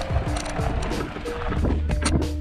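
Background music: a melody of held notes that step in pitch over a steady low bass tone.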